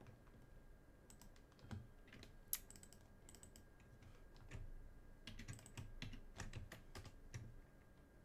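Faint computer keyboard typing: short bursts of keystrokes starting about a second in and ending just before the end, with a single sharper key click about two and a half seconds in.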